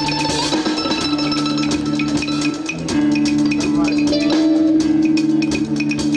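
Live band playing a song: guitars with percussion keeping a steady beat under held notes.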